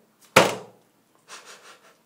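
A facial wax strip ripped off the skin against the hair growth in one quick pull: a single sharp tearing burst about a third of a second in, fading fast, followed by fainter breathy noise.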